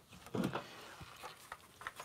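Faint handling of power tools in a plastic rolling toolbox: a cordless impact driver is set down inside it, with a short knock-and-rattle about half a second in, then a few light clicks of tools shifting against the plastic.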